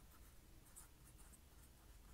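Faint scratching of a pen writing on paper, in short separate strokes.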